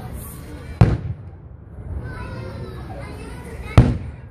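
Two loud booms of aerial firework shells bursting, about three seconds apart, with people talking in the crowd throughout.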